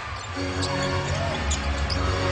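Arena court sound during play: low held notes of music from the arena sound system, with a basketball being dribbled on the hardwood court.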